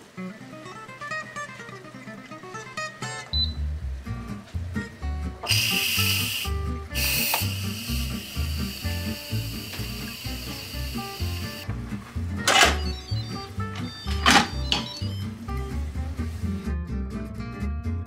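Background music with a steady beat. About five seconds in, an Instant Pot electric pressure cooker's steam-release valve hisses loudly for about six seconds, venting residual pressure after the rice has cooked, then two sharp clicks.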